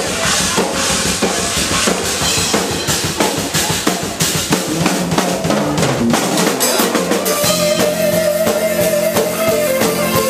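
A live band's drum kit and hand percussion play a busy groove. A long held note from another instrument comes in about halfway through.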